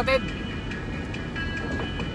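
Steady road and engine noise inside a moving car's cabin on a wet road, with faint background music; a man's voice ends just as it begins.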